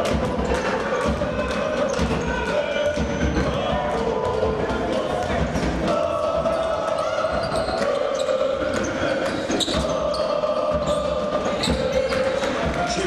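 Basketball dribbling on a hardwood court, a steady run of sharp bounces, with voices carrying through the large hall.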